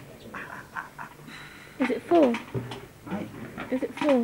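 A man's voice making drawn-out, exaggerated vocal sounds rather than clear words: the two loudest calls, about two seconds in and again at the end, slide down in pitch.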